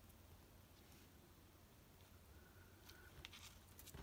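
Near silence: room tone with a low steady hum, and a few faint ticks near the end from paper pieces being handled on the card.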